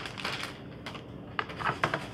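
Light, scattered taps and clicks of diced squash cubes on a metal cookie sheet and a plastic zip-top bag being handled, with a quick cluster of clicks in the second half.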